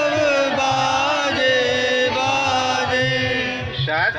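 A devotional chant sung into a microphone: long held, slowly gliding notes over a steady low beat, with a short break in the line just before the end.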